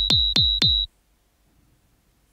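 Electro kick drum from the Groove Rider GR-16 iPad groovebox app, played four times in quick succession, about four hits a second. Each hit falls in pitch and carries a steady high ringing tone from a ring-modulator insert effect. It stops about a second in, leaving near silence.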